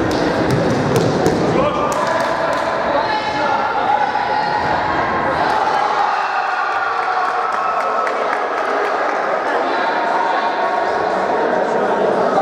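Futsal play in a reverberant sports hall: several sharp knocks of the ball being kicked and striking the floor or wall in the first couple of seconds, then players shouting and calling over one another.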